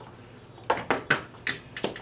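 Hard objects being handled, giving five sharp clinks and knocks in a little over a second, starting just before the middle.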